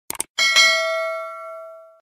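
Two quick mouse-click sound effects, then a bell chime struck twice in quick succession and ringing out, fading away over about a second and a half: the subscribe-and-notification-bell sound effect.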